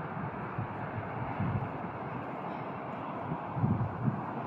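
Wind buffeting the phone's microphone over a steady outdoor hiss, with low rumbling gusts about half a second in and again near the end.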